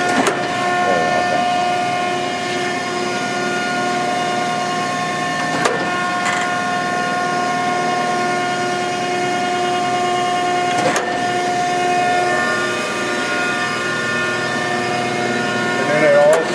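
Mattison 3993 surface grinder running with a steady machine hum and whine, broken by a sharp click three times, about every five seconds. One of the whine's tones drops out about three quarters of the way through.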